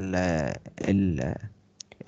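A man speaking for about the first second and a half, then a few short clicks near the end.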